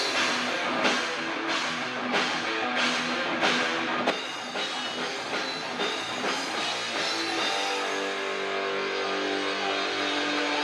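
Live rock band playing: electric guitars, bass guitar and drum kit, with heavy regular drum hits for the first four seconds. Then the drums drop back and held guitar notes ring on through the last few seconds.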